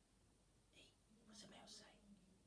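Near silence with faint whispered speech, a few soft hissed syllables in the second half.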